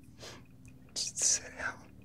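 Whispering: a few short, breathy whispered words with no voiced pitch, over a faint low hum.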